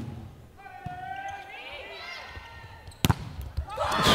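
Volleyball being struck hard: one sharp smack about three seconds in, followed by a few lighter knocks, as a spike is blocked at the net.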